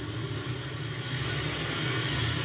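A steady low rumble with a hiss above it, without speech, from the episode's soundtrack.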